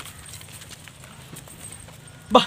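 Faint, irregular crunching steps of a person and a leashed Rottweiler puppy walking on dry leaves and dirt.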